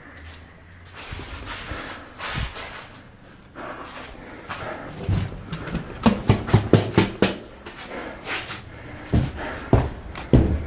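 Quick footsteps climbing concrete stairs: a fast run of sharp steps at about four a second, densest in the middle, ending in two heavier thumps near the end. Before the climb there is a few seconds of hissing noise.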